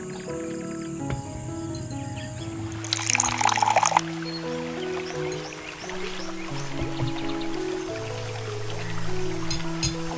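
Background music of held, slowly changing notes. About three seconds in comes a loud, noisy rush lasting about a second.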